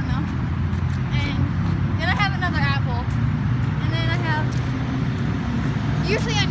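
Steady low rumble of road traffic passing along the road, with short stretches of indistinct voices about two and four seconds in.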